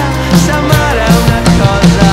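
Tama drum kit with a Mapex Black Panther snare and UFIP cymbals played live along to a recorded pop-rock song, a steady beat of about two strong hits a second under the band's pitched parts.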